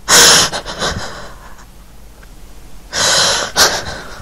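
A person sobbing in heavy, gasping breaths: two loud gasps about three seconds apart, each followed by a few shorter catches of breath, the sound of someone breaking down in tears.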